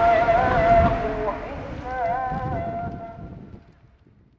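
A solo voice chanting in long, wavering held notes over a low background rumble, fading out near the end.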